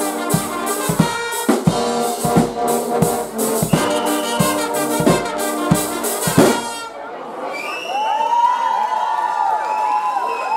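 Guggenmusik brass band (sousaphones, trumpets, trombones, saxophone) with drum kit playing loudly, the drums striking a steady beat, until the tune stops on a final cutoff about seven seconds in. After a short gap, crowd cheers and shouts follow.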